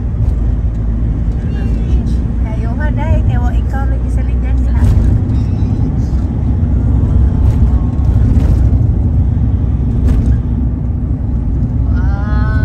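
Steady low rumble of a vehicle's engine and tyres while driving at speed, heard from inside the cabin, with brief snatches of voices.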